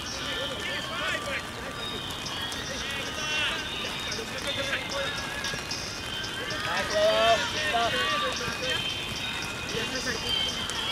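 Indistinct shouts of players calling across the pitch, loudest about seven seconds in, over a steady hiss of rain.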